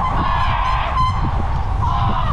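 Wind rushing over the microphone of a moving bike rider, a heavy steady rumble, with a short high toot about a second in.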